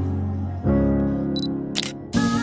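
Background music with sustained chords that change about two-thirds of a second in. Near the end a short high beep, like a camera's focus-confirm beep, is followed by a camera shutter click, both added as sound effects.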